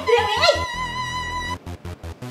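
A woman's short, sharp exclamation, followed by a steady high-pitched tone held for about a second that cuts off suddenly, over background music.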